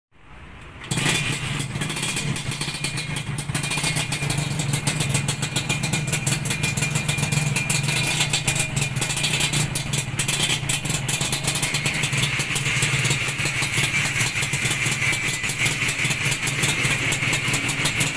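Modenas Dinamik 120 underbone motorcycle kick-started, its engine catching about a second in and then running steadily at idle.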